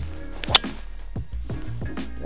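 A golf driver striking a ball off the tee: one sharp, loud crack about half a second in, over steady background music.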